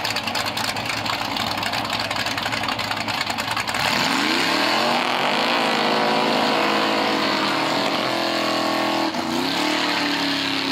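A 1950s Chevrolet's engine idles roughly, then revs up hard about four seconds in and is held at high revs while the rear tyres spin in a burnout. The revs dip briefly near the end and rise again.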